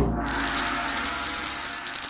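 Cinematic logo-sting sound effect: a sudden loud hit, then a sustained whooshing, rumbling swell.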